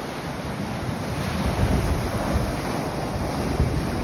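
Sea surf breaking and washing over a flat rocky shore, with wind buffeting the microphone in low gusts.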